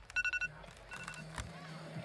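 An electronic telephone-style ring: a rapid trill of high beeping tones that stops about half a second in and returns faintly near one second. A sharp click follows, and soft music with a steady low note begins.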